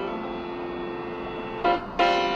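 Music from an FM country station playing through a portable TEF6686 receiver's small speaker: a held chord of steady notes, with a brief louder accent near the end as the music swells.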